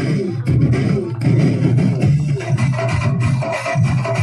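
Loud, steady music with a rhythmic beat.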